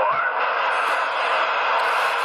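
Steady static hiss from a CB radio's speaker between transmissions, with no voice on the channel.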